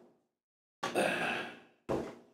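A man's sigh, voiced and soft, about a second in, followed by a brief intake of breath near the end.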